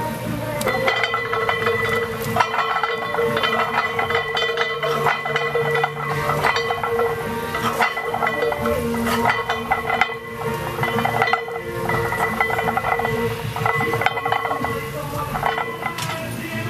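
Iron weight plates on a loaded barbell clinking and rattling against the bar as it is rowed, with background music playing.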